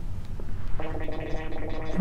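Touch sound effect from a children's finger-paint app on a tablet: a steady electronic tone of several pitches held together, starting about a second in as the screen is touched.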